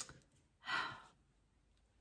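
A woman's single audible breath, about half a second long, just after a small mouth click.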